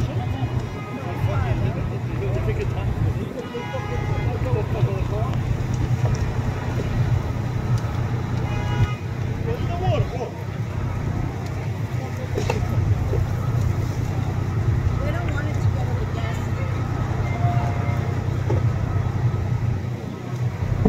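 A vehicle engine running steadily in a low, even drone, with voices in the background.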